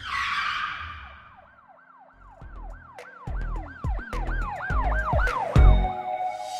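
Channel logo intro sting: a whoosh, then a siren-like wail that rises and falls about three times a second over bass hits that build up.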